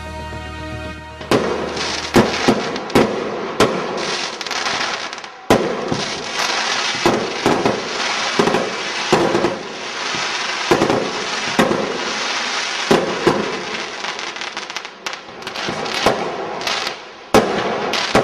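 Fireworks going off: irregular sharp bangs, roughly one a second, over continuous crackling. A held musical chord dies away just before the bangs begin.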